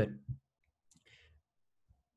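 A single spoken word, then a pause of near silence broken by a few faint clicks and a brief soft hiss.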